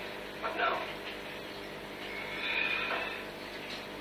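A television in the room playing soap opera dialogue: a few faint, indistinct words between pauses.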